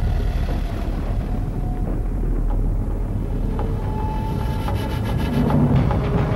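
Deep, steady rumble with faint sustained tones above it: a cinematic commercial soundtrack blending music and low sound effects.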